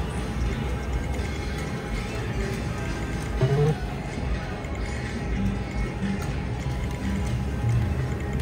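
Casino floor sound: background music and a steady wash of machine noise, with electronic sounds from a video poker machine as a hand is drawn and a small two-pair win is paid.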